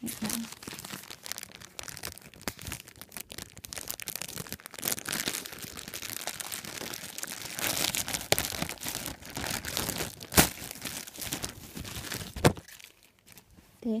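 Clear plastic packaging bag crinkling and being torn open by hand around a folded t-shirt, with two sharp cracks of plastic about ten seconds in and again near twelve and a half seconds, after which the crinkling stops.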